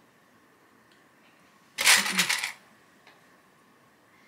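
A brief clatter of small hard objects, under a second long, about two seconds in, over quiet room tone.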